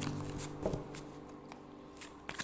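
Tarot cards being handled and shuffled by hand, with a couple of sharp card snaps about half a second in. A low steady held tone sounds at the start and fades out over the first second and a half.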